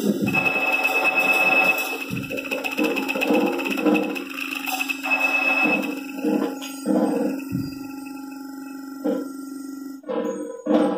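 Live improvised music. A high held tone sounds over a low steady drone, with pulsing mid tones and scattered short percussive hits. The high tone stops about six seconds in, and the playing thins out and softens near the end.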